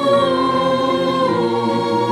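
Mixed choir singing long held notes, the melody stepping down once about one and a half seconds in.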